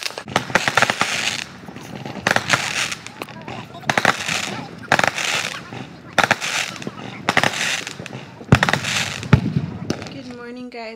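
Fireworks going off: a string of sharp bangs, several close together, with crackling between them. The loudest bang comes about eight and a half seconds in.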